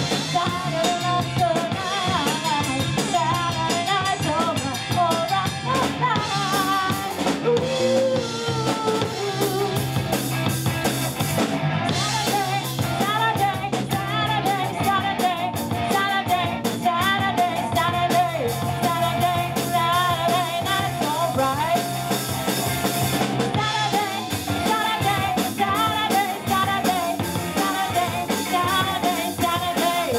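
Live rock band playing: a woman sings lead over electric guitar, electric bass and a drum kit.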